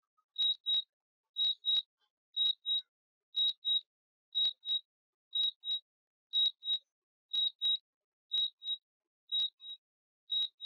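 DJI drone remote controller beeping its return-to-home alert: short, high beeps in pairs, about one pair a second, while the Mavic 3 Thermal flies itself back to the home point.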